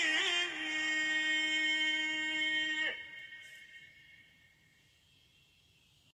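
The song's closing note: a single voice holds one long sung note that cuts off about three seconds in, and its echo fades away to near silence.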